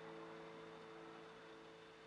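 The last chord of an acoustic guitar ringing out, a few held notes fading slowly to near silence.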